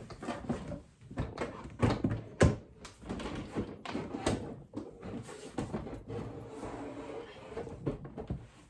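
Knocks and bumps of an object being pushed and shifted into a tight spot, with handling rustle between them; the sharpest knock comes about two and a half seconds in.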